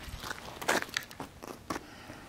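Footsteps crunching on snow and icy pavement: a few irregular crunches, the loudest about three quarters of a second in.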